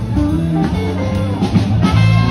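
Live band playing a blues-jazz style tune: electric guitar over a stepping bass line and drum kit.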